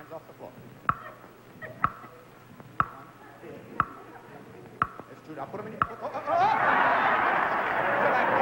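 Big stunt countdown clock ticking loudly, about once a second, as the timed stunt runs. About six seconds in, a studio audience bursts into laughter that carries on to the end.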